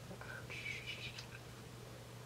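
A soft, breathy human voice sound lasting about a second near the start, over a steady low hum.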